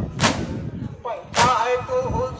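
A large crowd of mourners beating their chests in unison (matam): two sharp, loud slaps about a second apart, with men chanting between the strikes.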